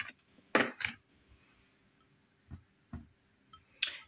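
Stuffed bread being pressed down into egg batter in a ceramic bowl by hand: a few brief soft knocks and handling noises, the loudest a quick pair about half a second in, over an otherwise quiet room.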